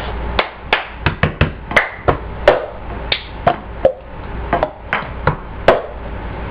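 Plastic cups and hands knocking, slapping and clapping on a tabletop in the cup-song routine: a run of sharp knocks, about two or three a second.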